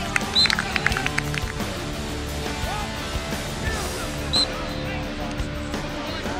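Lacrosse sticks clacking together in a quick series of sharp hits during the first second and a half, over background music and distant voices.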